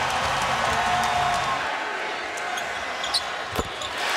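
Large arena crowd cheering steadily. Near the end come a couple of sharp knocks, a basketball bouncing on the hardwood court.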